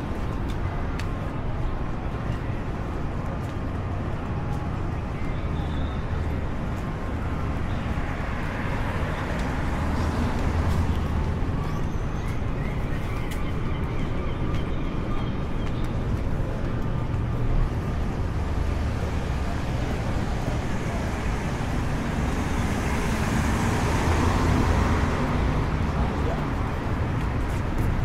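City street ambience: road traffic running by with a steady low rumble, the noise swelling near the end as a vehicle passes.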